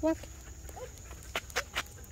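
The short spoken command "Walk", then three light clicks about a fifth of a second apart from the metal collar and leash hardware of a dog on a walk.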